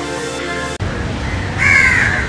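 Orchestral-electronic intro music cuts off under a second in. About a second and a half in, a crow caws once.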